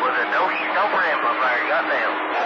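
A voice coming in over a CB radio receiver on channel 28 AM skip, with steady static hiss under it. The speech is not clear enough to make out words.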